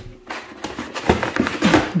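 Cardboard packaging rustling and scraping as boxes are handled and pulled out from a shelf, in a run of uneven rustles that grows louder about a second in.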